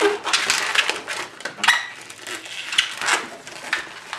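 Latex modelling balloons squeaking and rubbing against each other as they are twisted and bent by hand into loops, in a string of short, irregular crunchy squeaks.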